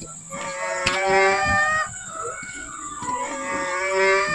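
Two long, drawn-out animal calls from farm livestock, each lasting about a second and a half, with a pause of about a second between them.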